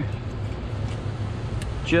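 Steady low hum of a running machine or engine, with a couple of faint ticks.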